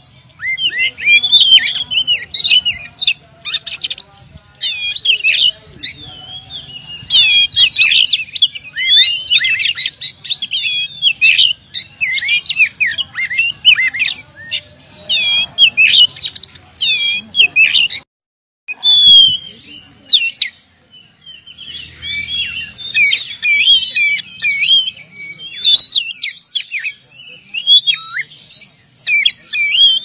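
Oriental magpie-robin (kacer) singing a fast, varied song of sweeping whistles and chirps. The song breaks off for about half a second a little past the middle, then goes on.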